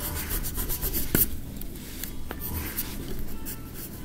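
Graphite pencil scratching and shading on paper in quick, short strokes, with a sharp click about a second in.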